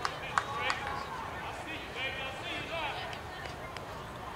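Faint voices calling out across a youth baseball field, with a few sharp claps or clicks in the first second over steady outdoor background noise.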